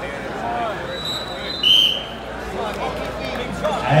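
Crowd chatter echoing in a gym, broken about one and a half seconds in by a short, shrill wrestling referee's whistle blast as time runs out in the period.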